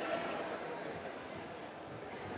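Background murmur of distant voices in a large sports hall, fairly quiet and steady, with a faint click about half a second in.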